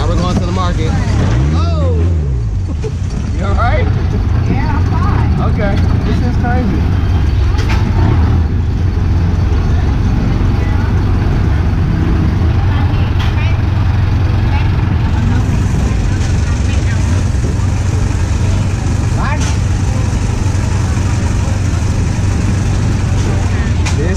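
Long-tail boat engine running steadily under way, a loud low drone driving the boat along the canal.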